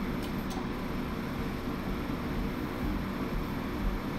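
Steady mechanical hum of a Cutera Excel V vascular laser unit running, its cooling system droning evenly. Two short clicks come about a quarter of a second apart in the first second.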